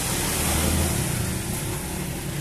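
Small motorcycle engine running with a steady low hum, swelling slightly about half a second in.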